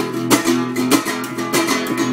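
Classical acoustic guitar strummed in a steady rhythm, about three chord strokes a second.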